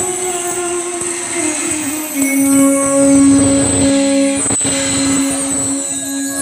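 Bamboo flute (bansuri) playing slow, long-held notes in an instrumental interlude of a Baul song, with one low note held for a couple of seconds from about two seconds in. There is a brief click about four and a half seconds in.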